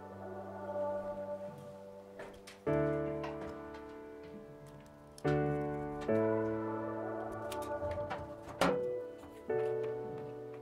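Background piano music: chords struck a few seconds apart, each left to ring out. Two short knocks sound under it, the second, louder one near the end.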